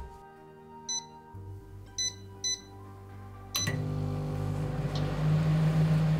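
Three short keypad beeps from a digital microwave oven, then a click as it switches on, followed by the steady low hum of the running oven (magnetron transformer and fan).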